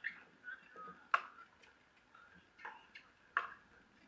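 Pickleball rally: paddles striking the hard plastic ball, four sharp pops at uneven intervals, the loudest about a second in and near the end.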